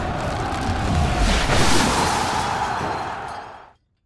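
Produced intro sound effect for an animated logo: a sustained rushing, booming swell with a tonal band underneath, growing louder about a second and a half in and fading out just before the end.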